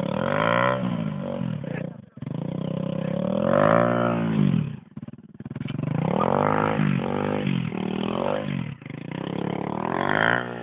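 Dirt bike engine revved up and down again and again, its pitch rising and falling in swells of about a second each, with two brief drops near two seconds and around five seconds in.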